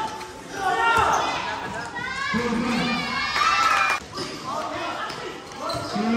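Loud shouting and calling from basketball players and onlookers, with a few thuds of a basketball bouncing on the court.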